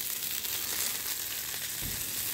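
Burger patty and fresh cooking oil sizzling steadily on a hot flat-top griddle.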